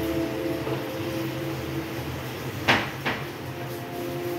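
Two short sharp knocks, about a third of a second apart, near the end, over a steady low hum with held tones.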